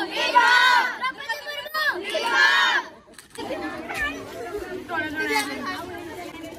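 A crowd of schoolgirls cheering, with two loud shouts in unison in the first three seconds. They break off briefly, then go on with lively mixed chatter.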